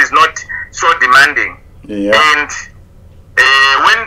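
Speech: a man talking in short phrases, with a brief pause before the end.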